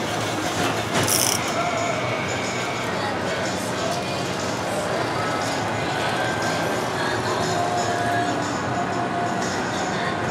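A K'nex model roller coaster running, its motor-driven cable lift winding up: a steady mechanical noise, with faint voices and music in the background.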